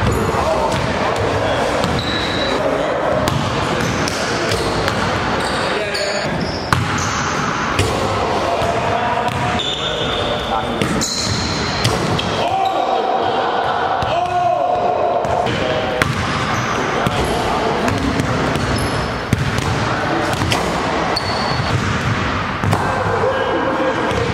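Basketballs bouncing on a hardwood gym court, with many sharp knocks through the stretch, over background chatter in the hall.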